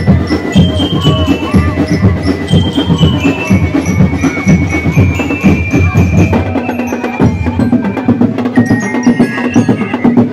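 Ati-Atihan festival street percussion: drums and wooden knockers beating a fast, dense rhythm under a high ringing melody line. The drumming thins out about seven seconds in.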